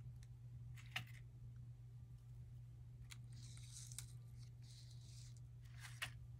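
Faint handling of paper craft pieces on a work mat: a few light taps, about a second in, around four seconds and at the end, and two soft paper rustles in the middle, over a steady low hum.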